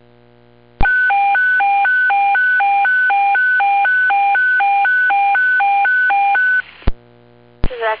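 Fire dispatch alert tone received over a scanner radio: a loud two-pitch high-low warble, alternating about twice a second for around six seconds, opening with a squelch click about a second in and closing with another click. A dispatcher's voice comes in near the end.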